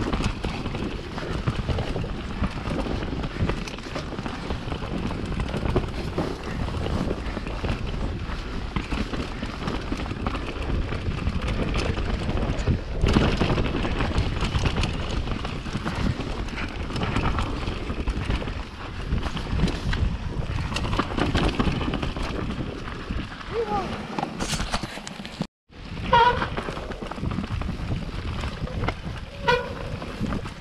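Mountain bike ridden downhill on a dirt forest trail: wind buffeting the bike-mounted camera's microphone, with tyre roll and rattle from the bike over the rough ground. The sound cuts out for an instant near the end, and a few short pitched squeals follow.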